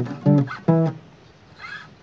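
Cutaway acoustic guitar strummed: three quick chord strokes in the first second, then the strings ring out and fade into a pause of about a second.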